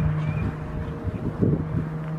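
A steady low hum with wind rumbling on the microphone, and two low thumps about half a second and a second and a half in.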